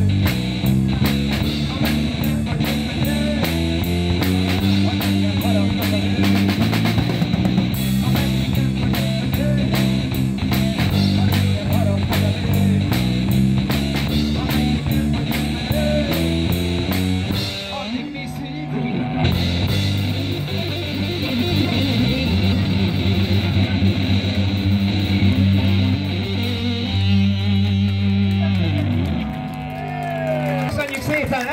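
Live blues-rock trio playing an instrumental passage: electric guitar over a bass line that steps between notes and a steady drum kit with cymbals. About two-thirds of the way through, the cymbals drop out for about a second while the bass carries on, then the full band comes back in.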